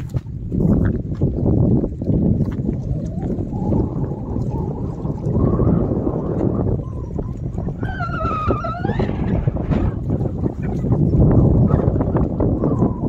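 Wind buffeting the microphone at a lakeshore, with small choppy waves lapping against the rocks. About eight seconds in, a brief wavering high call sounds over it.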